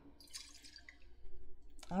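Liquor being poured into a glass: a faint trickle with a few small splashes and ticks.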